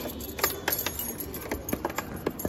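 A bunch of keys on a metal ring jangling in a run of short sharp clinks as a hand handles them.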